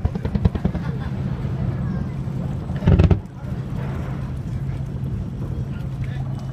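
Fireworks: a dense crackle in the first second, then a single loud boom about three seconds in, over the steady low hum of the houseboat's engine.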